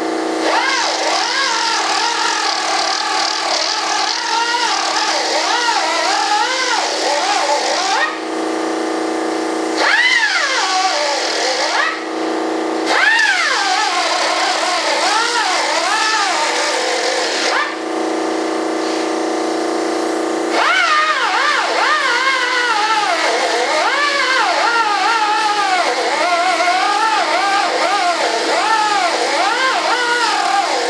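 Electric belt sander running on hardwood, a steady motor hum under a whine whose pitch keeps rising and falling as the tool bites into the wood and is eased off. The wavering whine drops out briefly three times, leaving only the steady hum.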